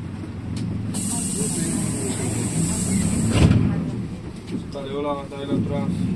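A moving vehicle's engine and road rumble heard from inside. A high hiss starts about a second in and cuts off about halfway through with a loud thump, and voices talk near the end.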